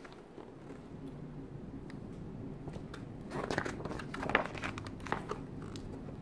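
Paper pages of a large hardcover art book being turned by hand: a few short rustles and crinkles in the second half, over a faint steady low hum.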